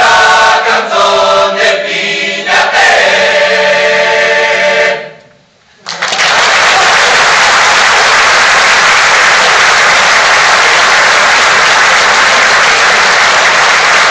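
Male choir singing a cappella, ending the last phrase of the song about five seconds in. After a brief silence, audience applause starts and continues steadily and loudly.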